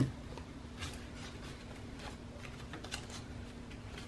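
Soft rustling and light clicks of paper bills and the plastic zip envelopes of a cash binder being handled and turned, with a sharper click at the very start.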